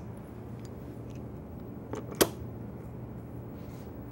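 A bar clamp being set and tightened onto an MDF router guide jig: light handling noise and one sharp click a little after two seconds in, over a steady low hum.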